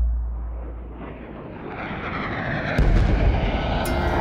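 The low ring of a deep boom dies away, then a low rumbling city background swells in, like distant traffic, with a heavy thump about three seconds in.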